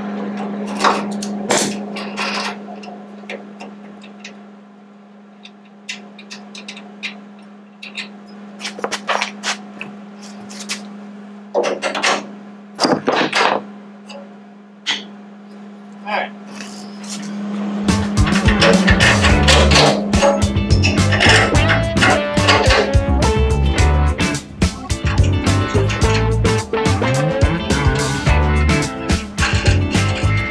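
Wrench work on a panhard bar's end bolt under a car: scattered metal clicks and clinks over a steady low hum. About eighteen seconds in, loud guitar music takes over.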